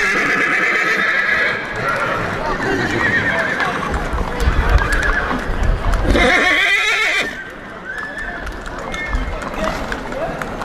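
Horses whinnying, a wavering call near the start and another about six seconds in, with hooves clip-clopping on hard ground.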